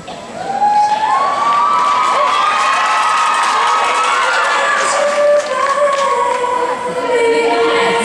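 Crowd cheering and screaming, many high voices held and overlapping, swelling up sharply about half a second in.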